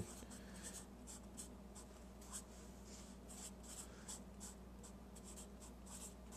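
Black felt-tip marker writing words on paper: a quick, irregular run of short, faint strokes.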